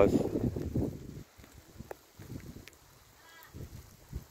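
Faint waterside ambience with a low rumble that fades after the first second, a few light ticks, and a short faint bird call about three seconds in.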